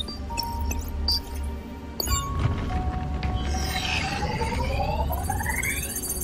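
Film soundtrack: music over a low steady hum, with short electronic beeps and, from about three and a half seconds in, a set of rising electronic tones.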